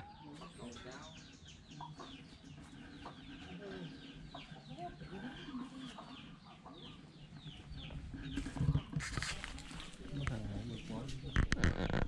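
Chickens calling: a rapid run of short, falling chirps repeated over several seconds. A louder rustling noise follows about nine seconds in, and a few knocks come near the end.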